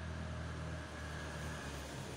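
A steady low engine hum in the background.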